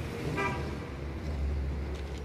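Street ambience: a short horn toot about half a second in, then a low rumble of traffic.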